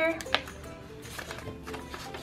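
A paper cash envelope and dollar bills being handled and rustled, with one sharp click about a third of a second in. Soft background music plays underneath.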